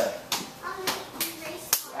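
Sharp slapping strikes, about four, as arms meet padded forearms in a two-person cimande arm-conditioning drill.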